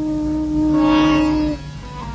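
Background music from a cartoon soundtrack: a long held note over a steady low pulse, with a higher note joining partway through; the held note stops about one and a half seconds in.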